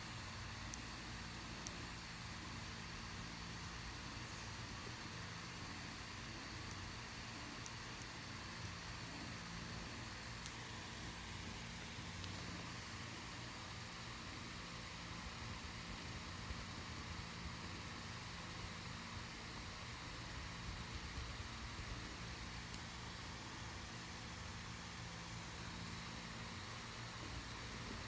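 A steady low mechanical hum with an even hiss over it, with a few faint ticks scattered through.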